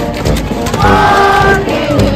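Live brass band playing, with a chord held for under a second near the middle, over a steady low beat.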